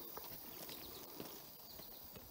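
Faint footsteps on loose railroad ballast stone, a few soft, irregular steps.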